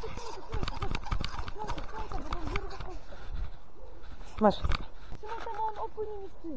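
Quiet, indistinct talking under low rumble and scattered knocks from a hand handling the camera close to the microphone, then one short spoken word near the end.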